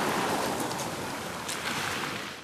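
Surf breaking and washing up a pebble beach, a steady rush of water.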